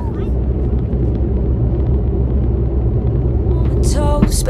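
Steady low rumble of a car's road and engine noise heard inside the cabin while driving.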